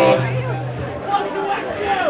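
Crowd and band chatter between songs in a small club, with overlapping voices and no clear words. A held amplified note from the stage cuts off just after the start.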